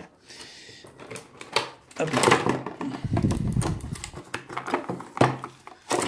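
Cardboard box and plastic packaging crackling, scraping and knocking as a diecast model pickup is pulled out of it by hand, roughly. A sharp knock comes just after five seconds.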